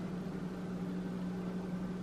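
Room tone during a pause: a steady low hum with a faint even hiss.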